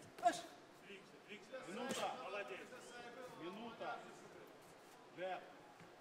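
Men shouting short instructions to a boxer from ringside, in several brief calls, with one sharp knock about two seconds in.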